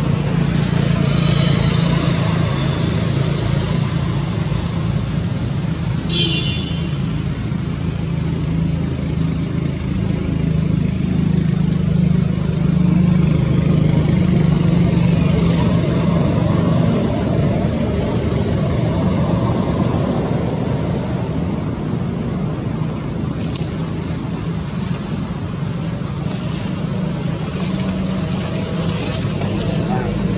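A steady low engine hum, like a motor vehicle running nearby, over a constant noise haze. A brief high squeak comes about six seconds in, and faint short high chirps come in the last third.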